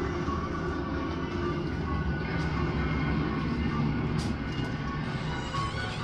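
Dark ambient soundtrack: a steady low rumbling drone with faint sustained tones above it.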